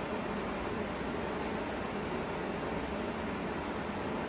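A steady, even hiss, with a few faint light clicks as fittings are handled at the pipe end.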